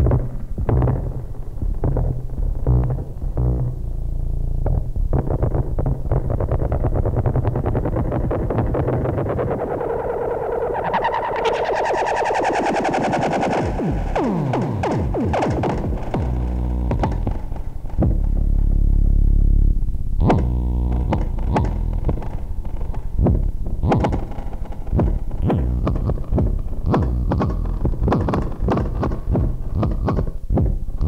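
Make Noise Eurorack modular synthesizer, MATHS driving the QPAS filter, playing a sequenced pattern of early-IDM-style electronic drum hits that blur into a bass line. About ten seconds in, a bright filter sweep rises and falls over the pattern, and a deep held bass note sounds for about two seconds a little past the middle before the busy rhythm of hits resumes.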